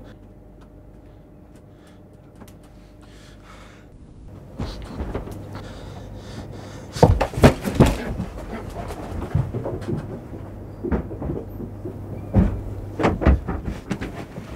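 A scuffle: heavy breathing and grunts with repeated thumps and knocks of bodies, starting about four seconds in after a quiet start and loudest about halfway through.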